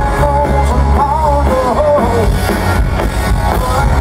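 Live country band playing loud with electric guitars, bass and drums, heard from the audience. A melody line slides up and down in pitch about a second in.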